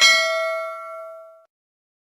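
Notification-bell 'ding' sound effect: one bright bell strike that rings with several tones and fades out over about a second and a half.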